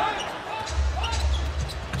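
A basketball being dribbled up a hardwood arena court: a few separate bounces over a steady low arena rumble.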